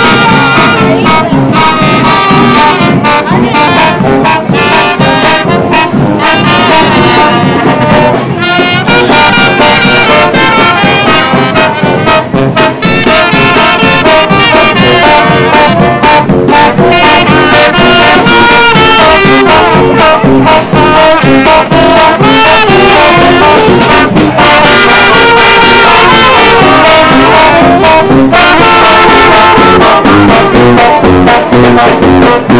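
A brass band with a sousaphone playing a tune with a steady beat, loud and without a break.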